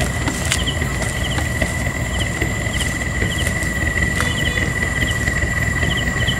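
Night insects: a steady high-pitched trill with short higher chirps repeating every second or so, over a low rumbling noise.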